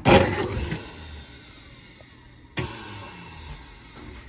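Countertop blender motor switched on with the jar open and the lid off, starting loudly at once and fading over about two seconds as juice sprays out. A short knock follows about two and a half seconds in.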